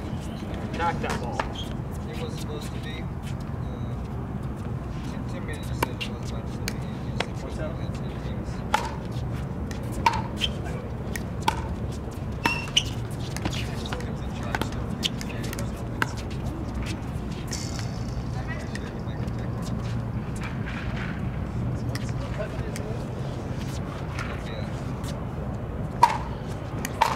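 Pickleball paddles striking a hard plastic pickleball in a doubles rally: sharp, short pocks at irregular intervals, often about a second apart, over steady low background noise.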